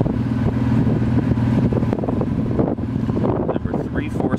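1993 Acura NSX's 3.0-litre V6 idling through a Magnaflow exhaust, a steady low hum that grows weaker and rougher after about two seconds, with wind buffeting the microphone.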